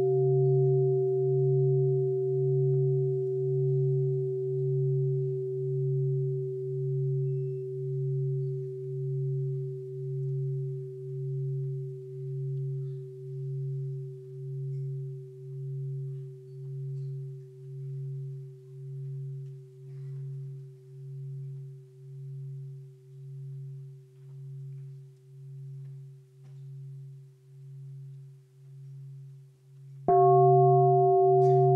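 A large bowl bell rung once, its low hum pulsing slowly, about once every second and a half, as the ring fades away over half a minute. It is struck again at the very end: a bell of mindfulness sounded before a chant.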